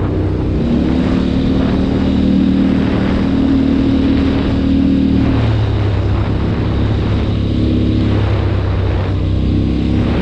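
ATV engine running as the quad is ridden along a rough road. The engine note is higher for the first half, drops about halfway through, and rises again near the end as the throttle changes.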